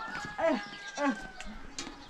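Two short calls from an animal, about half a second apart, each rising then falling in pitch.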